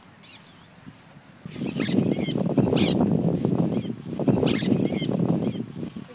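Flock of conures (small parrots) screeching in flight: repeated short, harsh, high-pitched calls, one near the start and clusters in the middle and near the end. Under the calls, from about a second and a half in, a loud low rumbling noise.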